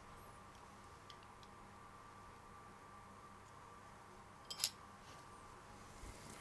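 Quiet room with a faint steady hum. About four and a half seconds in comes a brief sharp clicking scrape: a metal-bladed pry tool lifting the oven-heated heat spreader off an Intel 11900K CPU, with the indium solder beneath softened by the heat.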